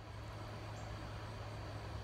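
Quiet outdoor ambience in a garden: a steady background hiss with a constant low hum and a faint, even high drone of insects.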